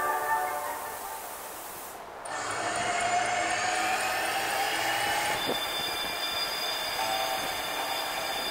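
Recorded train sound effect played over a light show's loudspeakers. Music fades out over the first two seconds, then the train sound starts suddenly, with a rising whine and, from about halfway, steady high tones running on.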